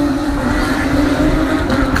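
Porsche race cars' engines at high revs, heard as one steady droning note.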